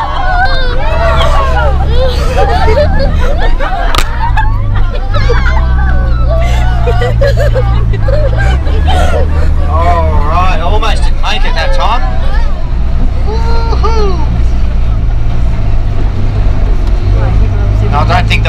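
Inside a four-wheel-drive bus on a rough bush track: the engine drones low and steady, its note stepping up and down a few times, under passengers' excited chatter and laughter.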